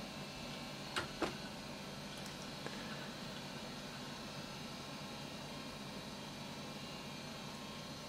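Two clicks of a laptop's pointer button, a quarter second apart, about a second in, as Turn Off is chosen. After them there is only a steady faint hiss and hum while Windows shuts down.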